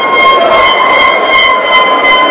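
A single long, steady high-pitched tone with overtones, played loud through a sound system.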